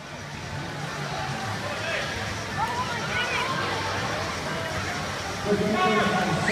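Spectators cheering and shouting in an echoing indoor pool hall: a steady wash of crowd noise with scattered distant shouts. A closer voice starts talking near the end.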